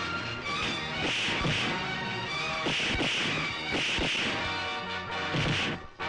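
Film background score playing under a fistfight, cut by several dubbed punch-and-thud impacts spaced a second or so apart.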